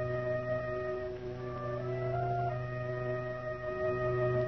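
Orchestral music: slow, sustained chords held over a continuous low bass note, with woodwind-like lines shifting pitch now and then.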